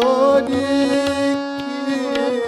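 Hindustani hori song: a male tenor voice bends up into a note and holds it over the harmonium's sustained reedy drone, while the tabla keeps time with sharp strokes and low bass-drum thumps.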